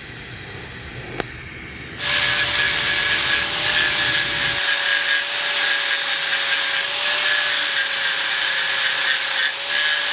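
TIG welding arc on stainless steel pipe buzzing steadily, with a sharp click about a second in. About two seconds in, an angle grinder starts abruptly at full speed grinding the stainless pipe: the loud rasp of the disc on the steel over a steady motor whine.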